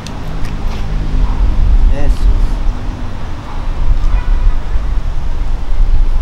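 Low, steady rumble of city street traffic, with a few brief faint voices.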